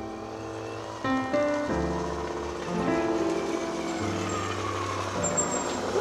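Keyboard background music with a small moped engine running under it as the moped rides up, its sound growing and rising in pitch over the last few seconds.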